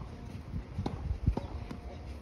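A few short knocks of a tennis ball bouncing and shoes on the court during a rally, the heaviest about a second in.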